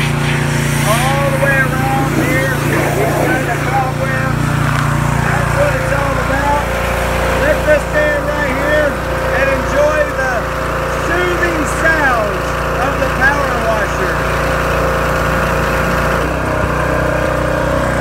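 Small-engine pressure washer running steadily under the hiss of its water spray. The low engine hum drops a little about six seconds in.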